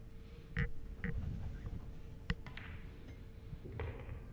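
Pool cue tip striking the cue ball once, sharply, a little after two seconds in, followed by fainter clicks of ball contact, over a faint steady hum.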